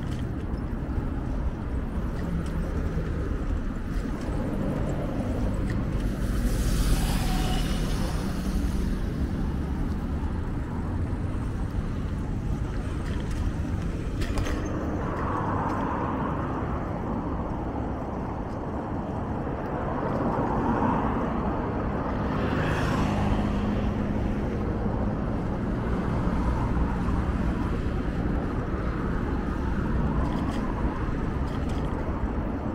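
Road traffic on a city street: cars passing over a steady low rumble of wind on the microphone from cycling. Two passes stand out louder, about a quarter of the way in and again about three quarters through.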